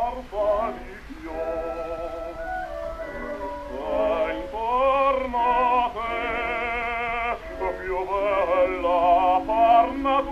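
Operatic singing with wide vibrato from a 1912 acoustic Victor disc recording. The sound is thin with no treble, and a steady low surface rumble runs beneath it.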